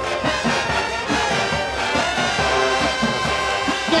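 High school marching band playing a brass-led tune, trumpets, trombones and sousaphones together over a low pulsing beat.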